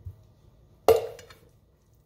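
A metal spoon clinks once against a ceramic plate, a sharp strike with a short ringing tail, as it is set down.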